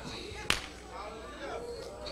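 A single sharp crack about half a second in, over faint background voices.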